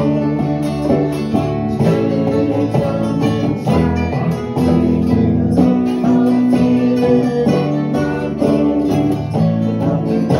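Acoustic guitar strummed and picked in a string-band jam, playing a tune without a break.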